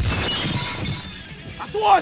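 A sudden crash with a shattering sound that dies away over about a second and a half, with music beneath it.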